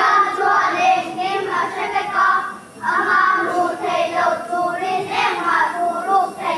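Children's voices singing in short held phrases.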